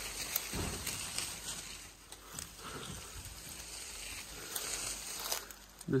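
Leaves and branches rustling and brushing close to the microphone as someone pushes through dense brush, with scattered small snaps and a low thump about half a second in.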